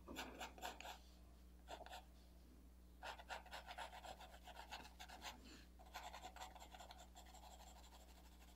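Faint, quick back-and-forth strokes of a 2B graphite pencil shading on paper, coming in several runs with short pauses between.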